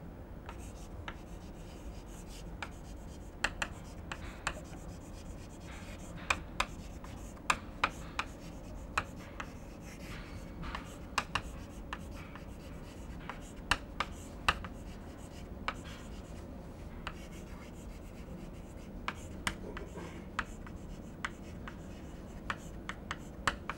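Chalk writing on a chalkboard: irregular sharp taps and short scratchy strokes as letters are formed, over a faint steady low hum.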